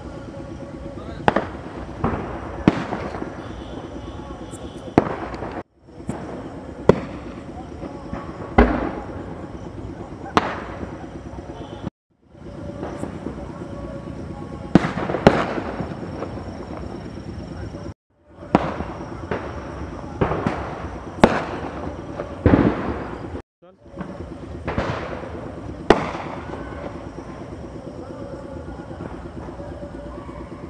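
Firecrackers going off one after another at irregular intervals, each a sharp bang with a short trailing echo, over a steady background of voices. The sound cuts out completely for a moment four times.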